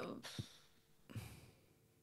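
A faint breath out, like a soft sigh, about a second in, during a thinking pause in conversation.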